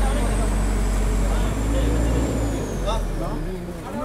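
Diesel engine of a backhoe excavator running with a steady low rumble that drops away near the end, with a thin high whine slowly falling in pitch over it. Voices talk in the background.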